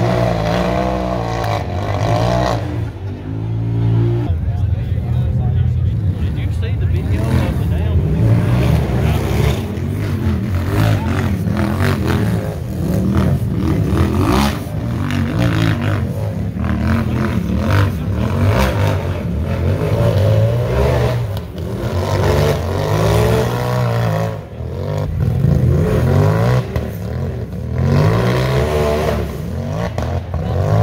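UTV engines revving hard on and off the throttle, pitch rising and falling again and again, as the machines climb a rocky hill course under load.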